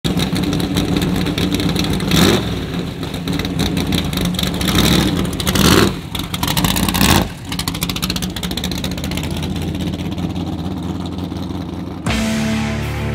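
Big-block gasser V8, a Mopar 440 stroked to 505 ci breathing through twin four-barrel carburettors on a tunnel ram, running loud with sharp throttle blips about two, five and a half and seven seconds in, then settling to a steadier rumble.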